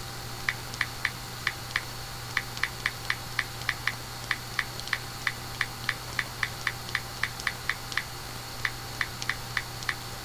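Typing: a run of short, sharp key clicks at an uneven pace of about three a second, starting about half a second in.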